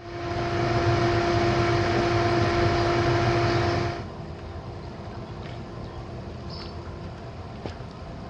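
Hayward pool heater running with a steady hum and a droning tone. About four seconds in it gives way to the quieter, even rush of spa jets churning the water.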